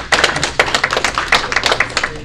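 Audience applauding at the end of a speech, a small crowd's individual hand claps heard distinctly and rapidly.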